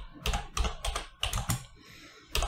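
Computer keyboard being typed on: a quick, irregular run of key clicks, several a second.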